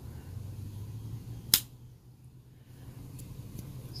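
Vintage Sabre Japan hawkbill pruning knife's blade snapping shut under its backspring: one sharp click about a second and a half in. The really good snap closed shows a strong spring with plenty of life left in it.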